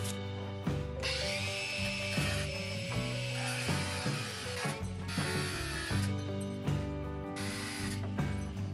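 Black+Decker BCG720N cordless angle grinder cutting through a steel threaded rod with its cut-off disc. The grinding starts about a second in, breaks off briefly near the middle, then carries on until shortly before the end.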